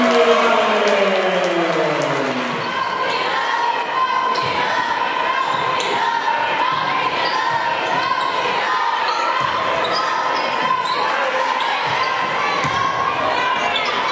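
Live women's basketball game in a gym: a basketball bouncing on the hardwood floor and other short knocks of play, under steady crowd and player voices. A falling voice-like sound comes in the first two seconds, and a steady high tone runs under the rest.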